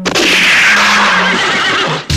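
A horse whinnying loudly, one long call falling in pitch over about two seconds, sampled into the track over a low held tone.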